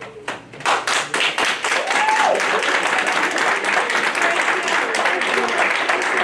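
Applause in a room: a few scattered claps build within the first second into steady clapping from several people, with voices calling out over it.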